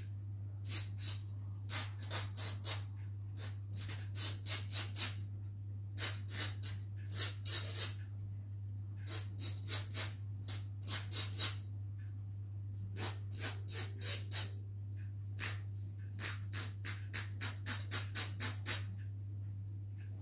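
Hand file scraping across the cut end of a steel bicycle spoke, deburring its sharp point. The strokes come in runs of a few quick strokes, about three a second, with short pauses between runs, over a steady low hum.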